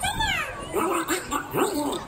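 A cartoon character's voice over the show's loudspeakers: a steeply falling cry, then a string of short, choppy vocal yelps.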